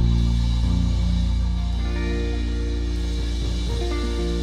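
Live gospel band playing: held keyboard chords over a deep bass, the chords changing every second or two, with drums.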